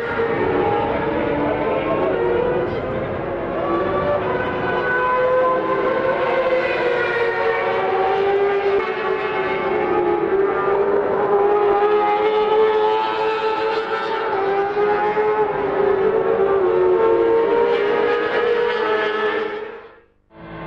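Racing motorcycle engines at high revs as several bikes lap the circuit: a continuous, loud, high-pitched engine note whose pitch slowly rises and falls as the bikes accelerate, shift and pass, with more than one engine heard at once.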